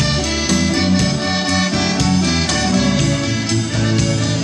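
Live folk-rock band playing an instrumental passage: an accordion melody over acoustic guitar, electric bass and a drum kit keeping a steady beat.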